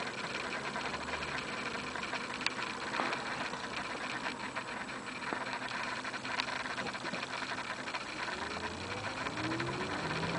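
Audi S8's 5.2-litre V10, running cold, heard from inside the cabin: a steady low running sound, and near the end the revs rise in a climbing tone.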